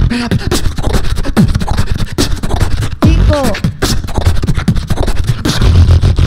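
Solo human beatboxing through a microphone and PA: a fast, dense run of kick and snare clicks over deep bass tones, with a few falling vocal glides about three seconds in.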